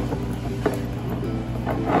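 Wooden pestle grinding and crushing in a small ceramic mortar bowl: a few short gritty scraping strokes, the loudest near the end, over background music.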